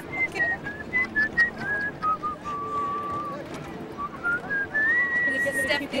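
A person whistling a tune: a clear single tone moving from note to note. A low note is held in the middle, then the tune climbs to a high note held near the end.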